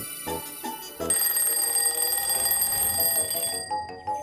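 A short run of cartoon music notes, then about a second in a bell alarm clock starts ringing steadily, the wake-up signal at sunrise. The ringing cuts off shortly before the end.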